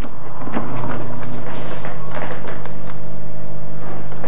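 A steady low hum runs through, with a few sharp plastic clicks as a plastic water-test kit case is unlatched and its lid swung open.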